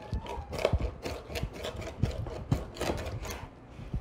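A mezzaluna rocking knife chopping hard, fresh marshmallow root on a wooden cutting board: a quick, uneven run of knocks, about four a second.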